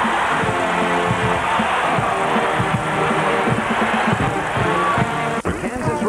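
College pep band brass, trombones and sousaphone, playing held notes over arena crowd noise during a timeout. The sound cuts off abruptly about five seconds in.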